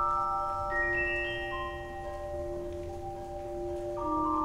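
Celesta playing alone: clear pitched notes ring on and overlap one another. About a second in comes a quick rising run of high notes, and fresh notes are struck near the end.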